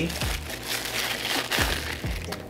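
Protective plastic wrapping crinkling as a camera lens is slid out of it and handled.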